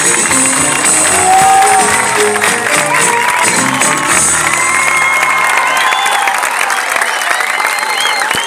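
An audience applauding and cheering over the last of the music, with voices shouting and cheering more from about three seconds in.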